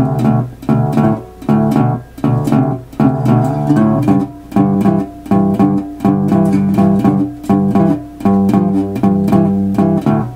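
Resonator guitar in open D tuning, played fingerstyle with a metal slide: a shuffle with a steady constant bass on the beat under slide licks.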